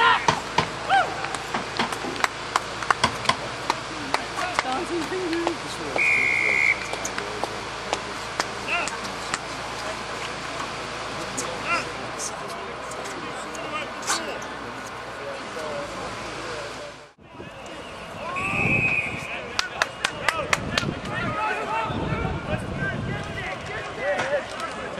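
Outdoor sound of a rugby match: players and spectators shouting, with scattered clicks and knocks. A short referee's whistle blast sounds about six seconds in and another a little before three-quarters of the way through. The sound briefly drops out just past two-thirds of the way through.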